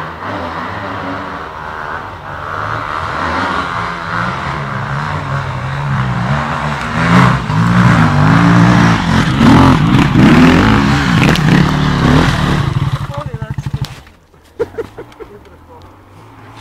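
KTM enduro motorcycle engine revving hard as the bike climbs a trail toward the listener, growing louder with the pitch rising and falling between throttle blips. Near the end it drops to a fast, even stutter and then falls away suddenly.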